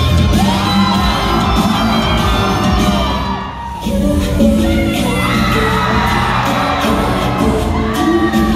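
Amplified K-pop music played live in a concert hall, with women's voices singing over a loud backing track that has a strong bass. The music drops back briefly about three and a half seconds in, then comes back in full.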